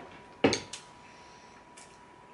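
A single sharp knock on a hard tabletop about half a second in, then a faint tick near the end.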